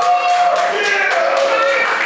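A woman's amplified voice singing long, drawn-out notes that glide from one pitch to the next, with the audience clapping along.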